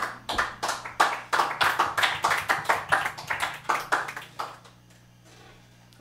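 A small group clapping at the end of a song: distinct claps at several a second that die away about four and a half seconds in.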